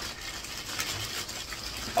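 Plastic mailer bag rustling and crinkling as it is handled and torn open.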